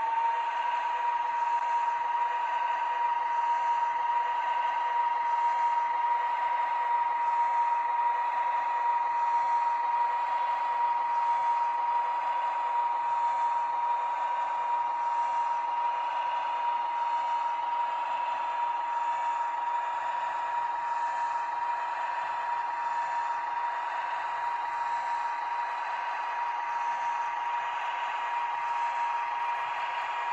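N-scale model locomotive running on the layout: the electric motor gives a steady, unchanging whine over the rolling noise of the wheels on the track.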